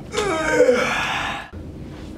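A young man's breathy vocal cry, a gasp sliding into a groan, falling in pitch over about a second and then cut off abruptly.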